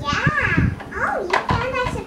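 High-pitched, childlike play voice with no clear words, its pitch swooping up and down, with soft low knocks of plastic dolls being handled.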